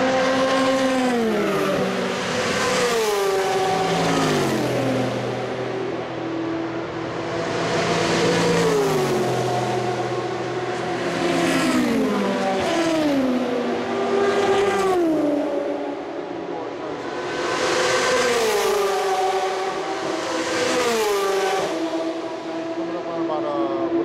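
Race cars passing one after another at full speed along a long straight, about ten in all, each engine note dropping sharply in pitch as it goes by.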